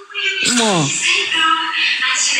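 A person's voice: one drawn-out call falling steeply in pitch about half a second in, followed by more voice sounds.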